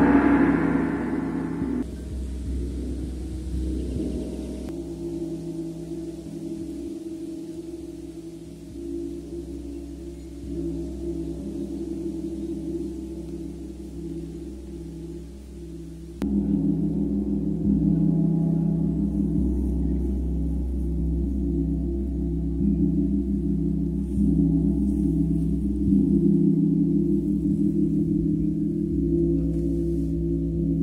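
Two large gongs, a black-centred chau gong and a big flat gong, played softly with felt mallets, giving a sustained, shimmering wash of many overlapping ringing tones. The sound swells and fades gently, jumps louder about halfway through, and after that carries soft repeated pulses from the mallet strokes.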